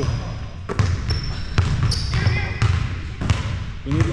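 Basketball bouncing on a hardwood gym floor, several sharp bounces a little under a second apart, with short high squeaks of sneakers on the court.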